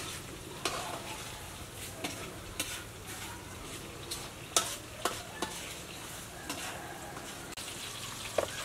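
A metal spoon stirring in small bowls of dipping sauce, with scattered sharp clinks of spoon on bowl over a steady crackling hiss.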